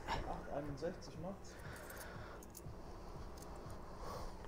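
A brief faint voice in the first second or so, then a few light clicks of coins being picked out of a wallet by hand.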